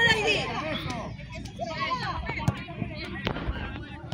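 Voices on an outdoor football pitch: a loud voice fading in the first half second, then fainter shouting from players and spectators. Several short, sharp knocks are scattered through, the loudest about three and a quarter seconds in.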